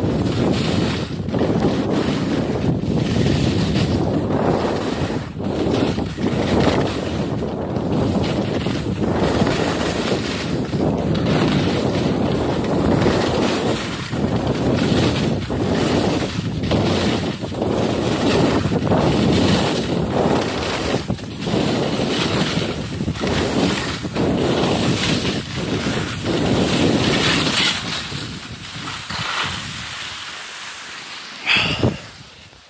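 Wind buffeting the microphone of a camera carried by a skier going fast down a snow slope, a loud rushing that swells and dips with each turn and eases off near the end as the skier slows.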